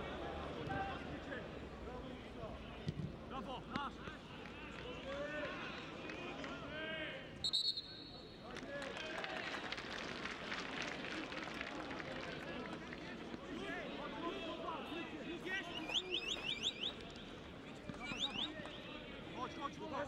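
Football stadium sound on a TV broadcast: scattered voices and shouts from a sparse crowd over a steady background. About seven and a half seconds in there is a short, high whistle blast. Near the end comes a run of quick rising whistles.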